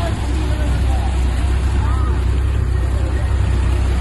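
Tractor diesel engine running steadily at low revs while driving through deep floodwater, with the churning and rushing of water pushed aside by the tractor.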